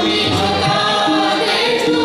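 A group of voices singing a Hindustani classical composition together in unison, holding and gliding between long notes, with low tabla strokes underneath.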